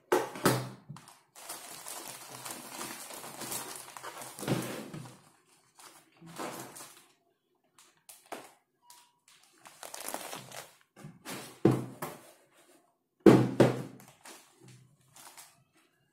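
Loose coconut-fibre substrate pouring out of a plastic bag into a clear plastic tub, with the bag rustling. Several dull thunks come as the bag knocks against the tub, the loudest near the end.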